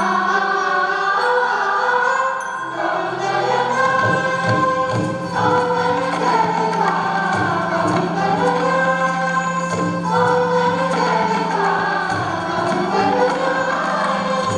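Indian music ensemble: a mixed chorus singing in unison with sitars and violins over a steady drone. Drum strokes come in about four seconds in.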